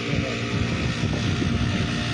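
Backpack brush cutter's small engine running steadily under load, driving a rotary weeder head that churns through soil.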